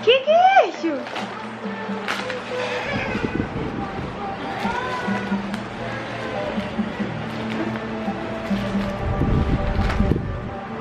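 A toddler's high squeal that slides up and back down right at the start, then a few short vocal sounds, over background music.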